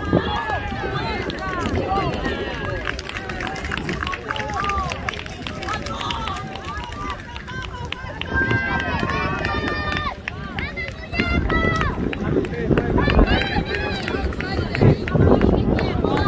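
Several voices of players and spectators calling and shouting across an open soccer field, overlapping and too far off to make out, over a low rumble of wind on the microphone that gets heavier about two-thirds of the way through.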